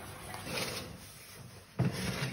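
Spoon stirring honey into sugar syrup simmering in an enamel pot, a soft bubbling hiss. Near the end a sudden loud clunk of the oven door being opened.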